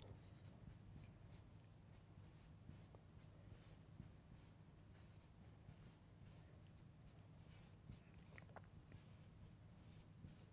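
Marker pen writing on a whiteboard: faint, irregular short strokes of the felt tip scratching across the board, over a steady low room hum.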